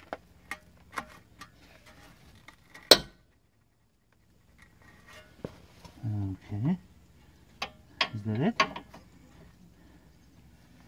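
A steel 18 mm spanner clinks and clanks against a rusty suspension bolt, with a few light clicks and one loud sharp clank just before three seconds in. Later come two short vocal sounds of effort, about six and eight seconds in.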